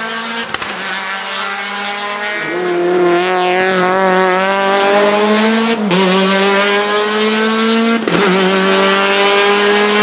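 Škoda Fabia hill-climb race car accelerating hard away up the hill. The engine note climbs in pitch through each gear, with upshifts about two and a half, six and eight seconds in.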